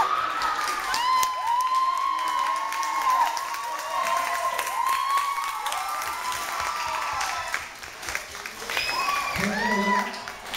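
An audience clapping and cheering, with several voices calling out over the applause. It eases briefly about eight seconds in, then picks up again.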